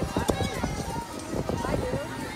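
Indistinct voices and music, with an irregular low rumble of wind or handling on the microphone.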